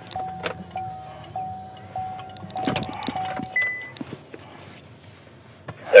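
Inside a moving patrol car: a repeating electronic chime of one steady pitch sounds in quick succession, stops about three and a half seconds in, and runs over the low hum of the car and sharp clicks and rattles of gear in the cabin.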